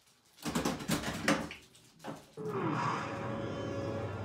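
Stern Meteor pinball machine starting a new game: a quick run of clacks and knocks in the first two seconds, then about halfway through the game's recoded intro audio, taken from the film, begins with a short falling tone over a steady music bed.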